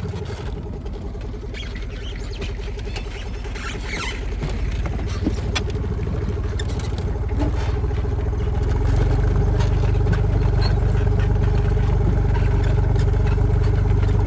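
Tractor engine running steadily as it tows a wooden trailer, a continuous low rumble with a few sharp knocks and rattles from the trailer boards. The rumble grows louder about two-thirds of the way through.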